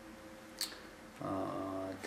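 A man's drawn-out, flat-pitched hesitation sound ("э-э") in the last second, after a short pause with faint room hum and a quick breath.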